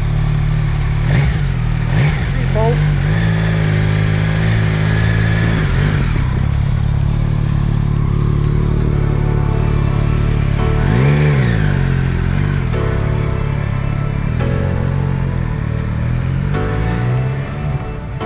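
Motorcycle engine running at idle close by, with one rev that rises and falls about eleven seconds in. Background music fades in near the end.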